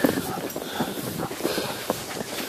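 Two harnessed dogs running over snow, pulling a bike, their paws and the wheels crunching through the snow in a quick, irregular patter.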